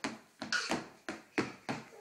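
A young child's sneakered feet landing in a skip on a hardwood floor: a quick, uneven run of light thuds, about three a second.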